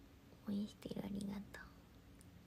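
Only speech: a young woman murmuring a few quiet words under her breath for about a second, much softer than her normal talking, over low room tone.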